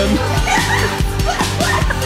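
Background music with a steady beat, with short high squeaky sounds over it.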